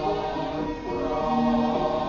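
Javanese court gamelan music for a Bedhaya dance, with a chorus of voices singing long held notes over the ensemble.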